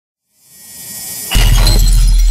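News-intro sound effect: a rising swell of high hiss builds for about a second, then breaks into a sudden hit with a deep, sustained low boom and scattered bright tinkling that slowly dies away.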